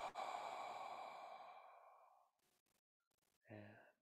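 A man's long, deep exhale, breathed out audibly and fading away over about two seconds, releasing a deep breath at the end of a qigong breathing exercise. A brief low voiced sound follows near the end.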